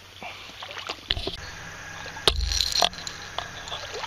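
Handling noise on the camera's microphone: scattered knocks and rubbing, with a louder rumbling scrape for about half a second a little past halfway.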